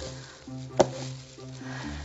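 Red silicone spatula scraping thick, heavy-traced tallow soap batter into a wooden log mould: soft, wet scraping with one sharp tap a little before the middle.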